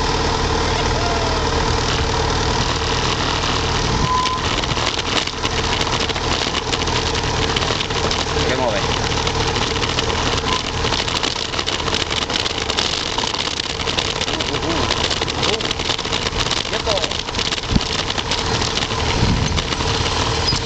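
Motorcycle engine running steadily at low revs while the bike creeps over loose, rocky dirt, with crackling noise over it.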